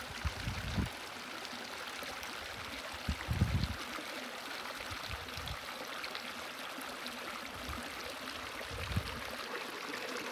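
Small mountain creek running over rocks, a steady rush of water. A few brief low bumps break in near the start, around three seconds in, and near the end.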